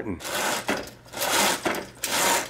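Heavy window curtain being drawn open, its hooks sliding along the rail in two long pulls.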